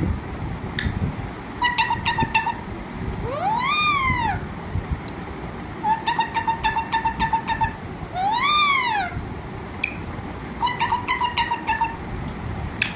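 An Alexandrine parakeet calling: three runs of rapid, evenly repeated short squawks, and twice a long drawn-out call that rises and then falls in pitch.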